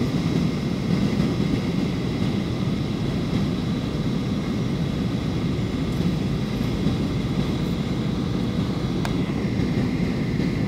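Steady roar of an airliner's engines and airflow heard from inside the passenger cabin during the landing approach, with faint, steady whining tones above the roar. A small click about nine seconds in.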